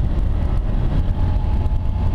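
Motorcycle riding along at moderate road speed, around 40 to 60 km/h: steady engine and wind rumble on the bike-mounted camera, with a faint steady high whine from about halfway in.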